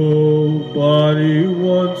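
A man singing slowly over backing music, drawing out long held notes on the song's closing line, with the pitch stepping and wavering between them.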